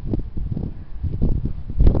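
Foam applicator pad rubbing wax onto car paint in circular strokes, heard as soft irregular swishes, over wind rumbling on the microphone that peaks near the end.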